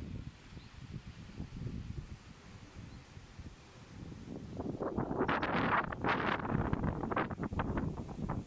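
Wind blowing across the microphone, a low rumble that grows into stronger, gustier buffeting from about halfway through.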